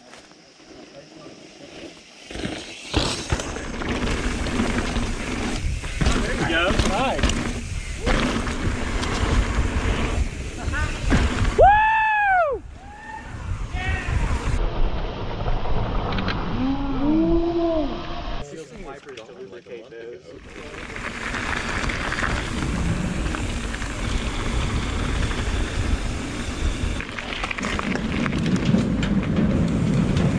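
Mountain bikes riding a rough dirt-and-rock trail, giving a steady rumble of tyres and trail noise with wind on the camera microphone. Riders whoop loudly about twelve seconds in, with more shouts a few seconds later. The sound changes abruptly several times along the way.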